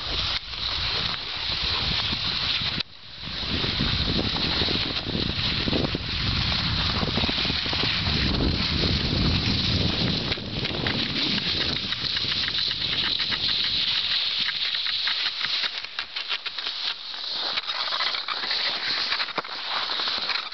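Skis sliding fast over a snowy ski track with wind buffeting the microphone, a continuous hiss and rumble. The rumble drops out briefly about three seconds in, and in the second half a fast rattling patter comes through.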